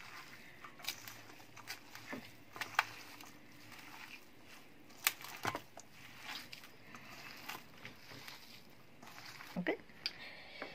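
Bare hands mixing raw minced beef with chopped onion and spices in a stainless steel bowl: quiet, irregular squishing with scattered clicks.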